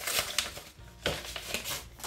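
Paper rustling and a few light taps as a greeting card is handled and opened out of its envelope.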